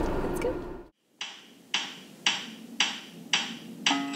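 Brief low car-cabin rumble, cut off about a second in. Then a music track opens with a steady beat of six sharp percussive hits, about two a second.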